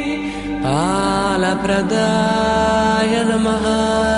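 Devotional mantra chanting with musical backing: the sung line glides up in pitch just under a second in, then holds long, steady notes.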